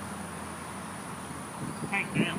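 Outdoor ambience with a steady, high-pitched insect drone, with a few brief fainter sounds near the end.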